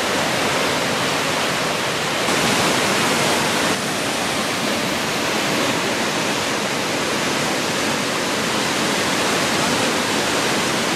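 The Triberg waterfalls' cascades rushing steadily over granite boulders, a dense even roar of falling water that swells a little for a second or so in the middle.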